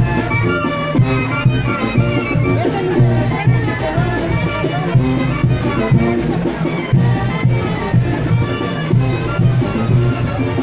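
Band music for chinelo dancers, a lively traditional son with a steady beat.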